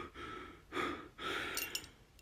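A man breathing hard through an open mouth: about four quick, noisy breaths in and out, the panting of someone shaken by a close call.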